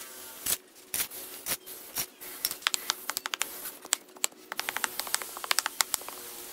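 Wooden stick tamping dry, gritty cement mix into a wooden block mould. A few knocks come about every half second at first, then a quick run of sharp gritty clicks and scrapes.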